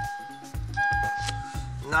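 Background music: long held electronic notes, with a short break about halfway through, over a pulsing bass beat.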